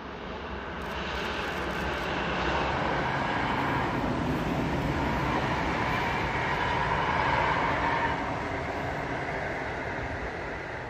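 PKP Intercity EP07 electric locomotive hauling a train of passenger coaches past at speed: a steady rush of wheels on rail. It builds over the first couple of seconds, stays loud while the coaches go by, and starts to fade near the end.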